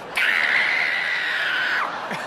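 A person screaming in one long, high-pitched shriek that lasts about a second and a half and stops shortly before the end: a fright reaction to a cockroach loose on the floor.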